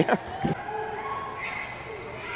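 A basketball bounced once on the court floor about half a second in, with the low murmur of an arena crowd behind it.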